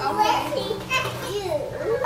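Young children's voices: toddlers chattering and babbling as they play, with no clear words.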